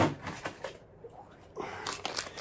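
Short rustle of paper packaging and light handling noise near the end, as a new throttle body is lifted out of its wrapping.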